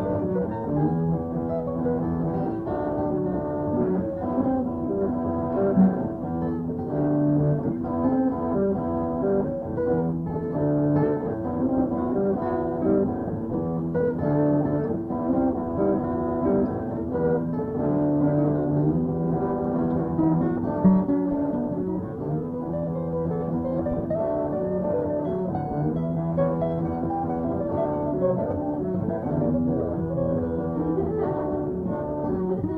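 Guitar band music without vocals, several guitars playing a repeating pattern of notes. The sound is muffled, with the treble cut off.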